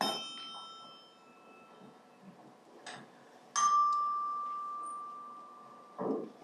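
Small metal percussion instruments struck one after another. The first, at the start, rings with several high overtones and fades within about a second and a half. After a light tap, a second strike about three and a half seconds in gives one clear ringing tone that dies away slowly over two seconds.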